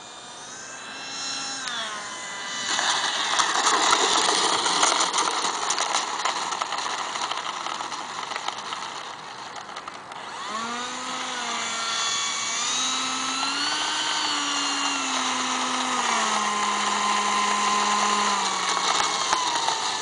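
Electric ducted fan of a Starmax F-5 Tiger model jet whining and falling in pitch as the throttle is pulled back on final approach, then a rushing noise as it touches down and rolls out. About halfway through, the fan whine picks up again, rising and wavering in pitch as the jet is taxied on the runway, then slowly winding down.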